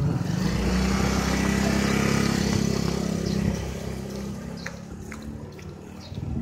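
A motor scooter passing close by: its engine hum swells in the first half second, holds for about three seconds, then fades away as it moves off.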